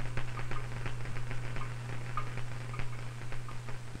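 A steady low hum with many faint, irregular crackling ticks.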